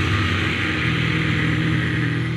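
Metal music: a distorted electric guitar chord held and left ringing with no drums, over a hissy wash that slowly fades near the end.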